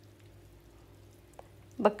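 Faint, steady sizzle of filled yufka pastry squares (pişi) frying in hot oil in a nonstick pan, over a low steady hum. One light click a little past halfway.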